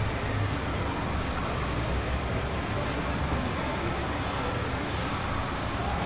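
Steady background din with a low rumble, like a busy city's traffic and ambience; no single sound stands out.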